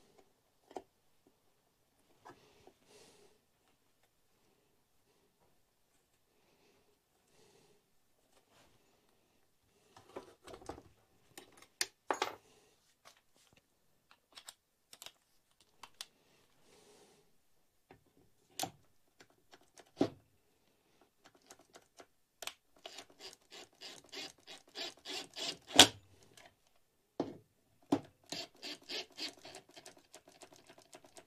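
Cordless drill/driver running screws into a chainsaw crankcase in short runs, each a rapid train of clicks over a steady hum, starting about two-thirds of the way in. Before that, only occasional light knocks and clicks of metal parts being handled.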